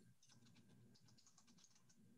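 Near silence with faint, irregular clicks of keyboard typing.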